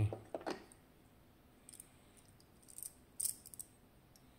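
A few faint, light metallic clicks as the small brass cylinder of a Miwa DS wafer lock is handled and a thin tool is brought to its keyway, the loudest cluster near the end.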